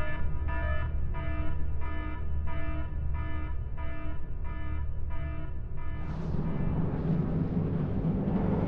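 Shipboard alarm sounding in a steady pulsing tone, a little under two pulses a second, over a low steady rumble. About six seconds in, the pulses stop and a rising roar swells up.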